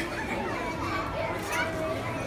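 Indistinct voices of people talking in a busy store, some of them high-pitched like children's voices, over a steady background hubbub.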